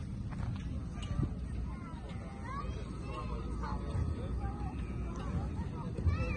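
Faint, scattered voices of children and adults calling and chattering some way off, over a steady low rumble.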